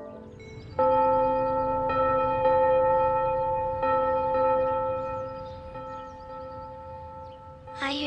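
A large church bell tolling. It is struck about a second in and again every second or two, each stroke ringing on and slowly fading.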